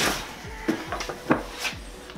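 Stiff plastic traction boards knocking and clacking as they are pulled out of a nylon carry bag and lifted, with the bag rustling; about four sharp clacks spread through the two seconds.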